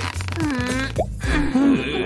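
A cartoon character's wordless straining grunts and squeaks, short pitched vocal noises that bend up and down, with a quick upward squeak about a second in.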